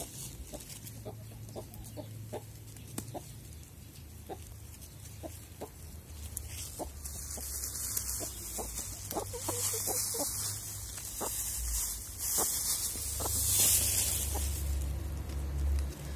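Domestic hens clucking in short, separate notes as they gather and peck at bread on the ground, the clucks coming thicker from about a third of the way in. A hissy rustling, like dry leaves being stirred, grows louder in the second half.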